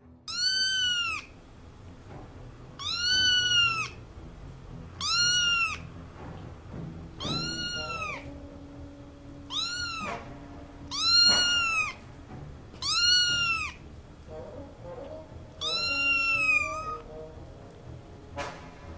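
A young kitten meowing repeatedly: eight high-pitched meows, each rising then falling in pitch and lasting under a second, about two seconds apart.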